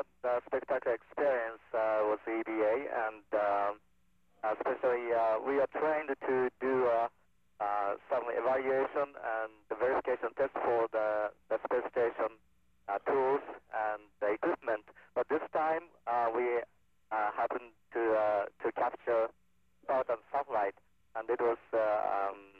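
Speech only: a man talking into a handheld microphone over a space-to-ground radio link, with a faint steady hum beneath.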